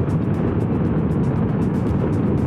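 Steady riding noise from a Honda CRF1000 Africa Twin adventure motorcycle cruising on a paved road, with background music with a fast, steady beat laid over it.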